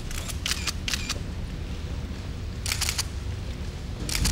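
Quick bursts of camera shutter clicks, a few rapid frames at a time, over a low steady rumble. Three bursts come within the first second and another near the end.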